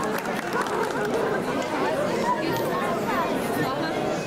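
A crowd of children chattering and calling out at once, many high voices overlapping with no single one standing out.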